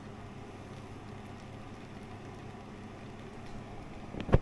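Steam juicer running on the stove: a steady hiss over a low hum.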